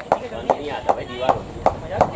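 A person clapping their hands steadily and close by: about five sharp claps, evenly spaced a little under half a second apart.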